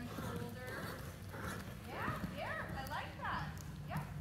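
A horse walking on the soft footing of an indoor riding arena, hoofbeats coming closer, with distant voices in the hall.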